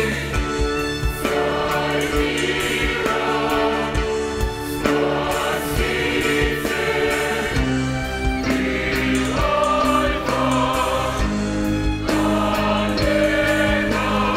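Large mixed choir singing a church hymn in held chords, with a live orchestra of strings, keyboard and guitar accompanying.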